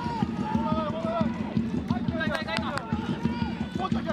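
Football stadium sound during a corner kick: a fast, even rhythm of low thuds from the stands, with voices calling out over it.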